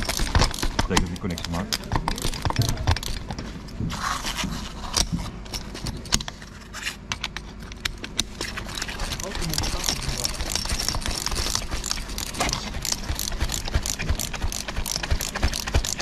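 Small metallic clicks and scrapes as a screw clamp on a copper earthing cable is worked onto a railway rail, busier in the second half, with voices in the background.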